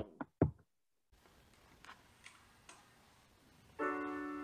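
The tail of a spoken word, then quiet room tone with a few faint ticks. Near the end a piano comes in with a held chord, opening a hymn accompaniment.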